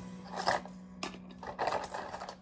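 Seashells clinking and rattling against each other and the sides of a plastic tub as a hand rummages through them, in two short bursts about a second apart.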